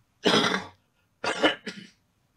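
A man coughing twice, the coughs about a second apart.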